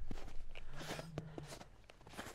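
Boots crunching through shallow snow, a few footsteps at a walking pace.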